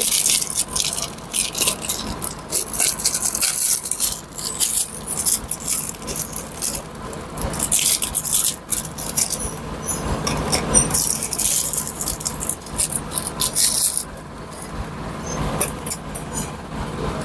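Clear plastic bag crinkling and rustling in the hands as new piston rings are unwrapped from their packaging, with irregular crackles throughout.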